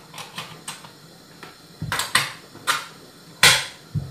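Ring-pull tins of mackerel being opened by hand: a string of sharp clicks and snaps, faint at first and stronger through the second half, the loudest a little before the end.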